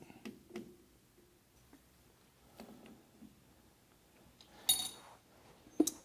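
Faint taps and metal clinks at a four-jaw lathe chuck as stock is tapped flat against steel parallels with a mallet. A louder clink with a brief high ring comes about three-quarters of the way through, and a shorter one just before the end.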